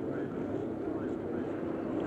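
Racing car's Cosworth DFV V8 running steadily at speed through a fast corner in fourth gear, about 190 km/h, heard as an even noise on an old broadcast recording.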